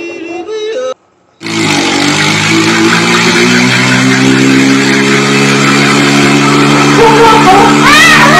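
Loud music from a meme clip, a steady droning chord over heavy noise, starting abruptly after a brief silence about a second and a half in. Voices are heard before the gap and again near the end.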